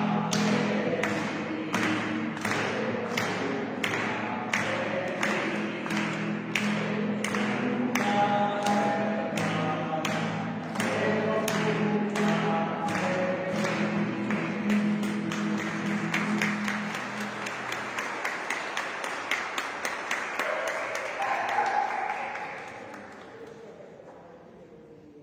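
A hymn sung with accompaniment over a steady beat of sharp strikes, about two a second, that quickens in the second half. The music fades out near the end.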